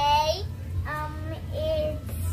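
A child singing three drawn-out notes, the voice sliding in pitch on each.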